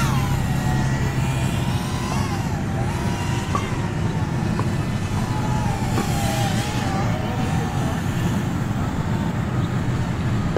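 Tiny whoop FPV drone's small brushless motors whining, the pitch rising and falling with the throttle, over a steady low rumble.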